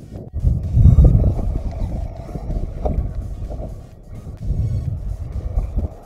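Wind buffeting the action camera's microphone: a rough, gusting rumble, strongest about a second in and again near the end.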